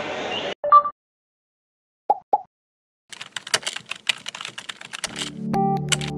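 Keyboard-typing sound effect: a quick run of key clicks lasting about two seconds, as a web address is typed into an animated search bar. Before it come a short electronic tone and two brief blips, and a music jingle with a sustained melody starts near the end.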